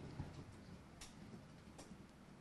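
Near silence: room tone with three faint, short clicks.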